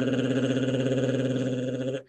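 A man's smooth voiced uvular trill (a rolled French R), held on one steady pitch with a fast, even rattle of the uvula, cutting off at the very end.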